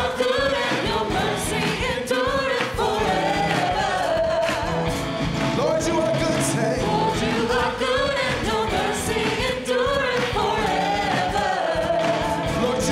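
Live gospel worship song: a man sings lead with long, gliding sung lines while playing a Yamaha MOXF8 synthesizer keyboard, over continuous band accompaniment.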